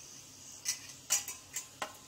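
A spatula stirring sautéed vegetables in a nonstick pan, giving a few short scrapes and knocks against the pan from about half a second in.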